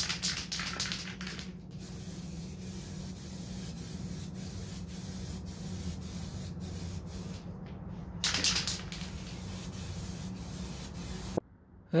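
Aerosol can of filler primer spraying: a hiss lasting about the first second and a half, then another short burst about eight seconds in. In between come a few faint clicks over a low steady hum. The can is already two-thirds empty and running out.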